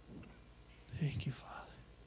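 Only quiet speech: a man says a few soft words about a second in.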